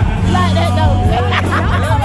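Live band music with a steady bass line and a singing voice, with people talking near the recording phone over it.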